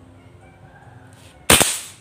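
A single shot from a PCP (pre-charged pneumatic) air rifle with a stainless-steel air tube: one sharp, loud report about one and a half seconds in, dying away over about half a second.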